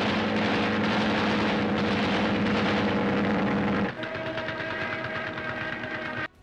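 Biplane engine drone mixed with rapid machine-gun fire, from a 1930s war-film soundtrack. About four seconds in, the sound drops and the engine goes on quieter at a higher pitch.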